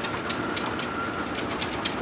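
Dog's paws striking a running treadmill belt in the even, quick rhythm of a trot, several footfalls a second, over the treadmill's steady motor whine.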